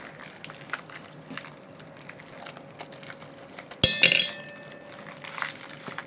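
Faint crinkling and clicking as ice cubes are worked out of a plastic ice-cube bag. About four seconds in, ice drops into a stainless steel cocktail shaker tin with one loud clink, and the tin rings briefly.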